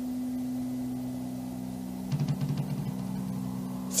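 Low, eerie sustained drone of a few steady held tones, which begins to pulse and waver about two seconds in.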